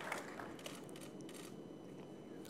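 The last of the applause dying away into faint room noise, with a few faint clicks.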